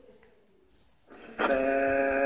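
A young child's voice holding one steady, unbroken vowel-like sound for about a second, starting about halfway through, as the child sounds out an Arabic letter with the tongue at the front teeth.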